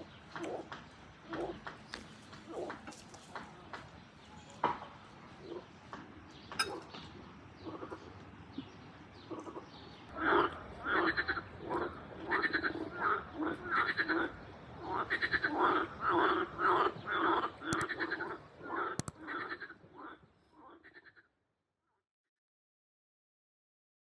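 Frogs croaking: a dense series of rapid, repeated croaks starts about halfway through and fades out just before the end. Before that there are only scattered light clicks and faint calls.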